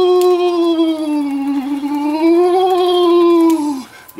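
A man's voice holding one long, wavering "oooooh" note, dipping slightly in pitch midway and falling off near the end.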